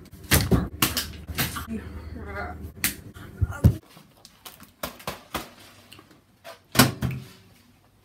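Irregular knocks and bumps, several of them sharp, with a low steady hum under the first few seconds that stops abruptly.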